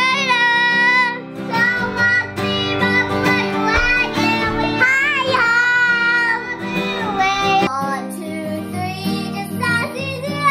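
A young child singing along to a strummed acoustic guitar, holding long notes with a wavering pitch.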